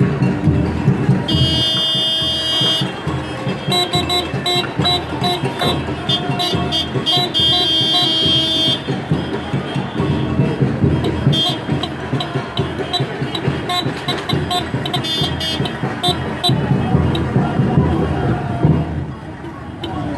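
Batucada drumming with a dense, rhythmic beat. Short tooting tones repeat over it, many in the first half and fewer later.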